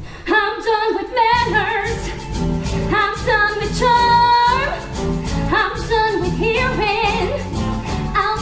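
A woman singing a musical-theatre solo line with vibrato over a band accompaniment, which picks up a steady beat about a second in; near the middle she holds one long high note.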